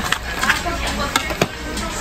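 A few sharp clicks and taps of knives and a plastic tray being handled in a boxed kitchen knife set, over background music and faint voices.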